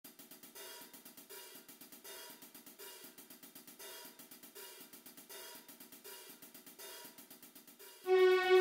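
Quiet opening bars of an orchestral piece: soft cymbal-like percussion ticks in a steady repeating rhythm, with faint low notes recurring about once a second.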